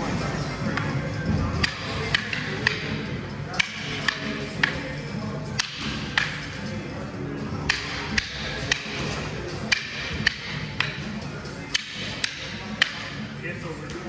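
Rattan Kali sticks clacking against each other in a partner drill: sharp strikes at a steady pace of about two a second, in short runs broken by brief pauses, over background music.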